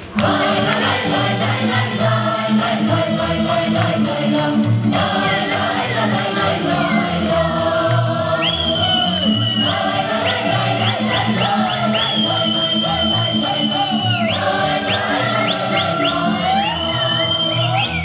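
Mixed folk ensemble singing a Romanian folk song together in chorus over instrumental accompaniment with a steady low beat. Long high notes ring out three times in the second half.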